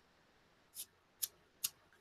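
Three short, faint, crisp flicks of a stiff paintbrush's bristles, about half a second apart, spattering watercolor paint onto paper.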